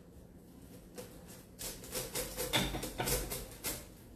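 Rustling and light scraping from handling a sprig of flowers whose stems are being pushed down into rocks: a run of short, irregular rustles starting about halfway through, with a few soft handling bumps.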